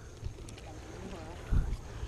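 Wind buffeting the microphone, a low rumble with a stronger gust about one and a half seconds in. A faint voice is heard far off about a second in.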